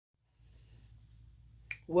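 A faint low hum, then a single sharp click near the end, just before a woman starts speaking.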